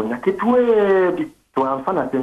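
Speech: a phone-in caller's voice, thin and cut off in the highs like a telephone line, with one long drawn-out syllable in the middle and a short pause after it.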